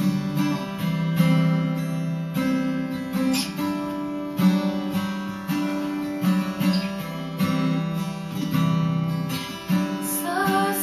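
Acoustic guitar strummed in a steady rhythm, chords changing about once a second, as the instrumental intro of a song. The player has warned of tuning issues with the guitar.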